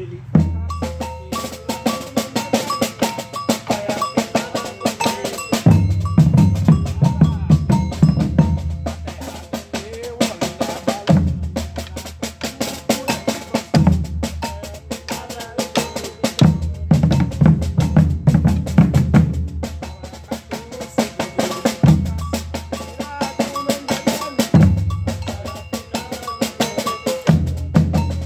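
Maracatu de baque virado drum ensemble playing: rope-tuned alfaia bass drums come in with heavy phrases that return every few seconds, over a steady fast snare pattern and a ringing metal bell. The whole group comes in together at the start.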